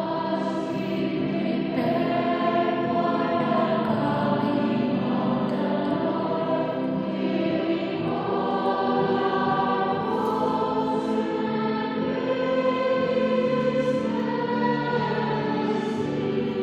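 A choir singing, with long held notes and several voices together.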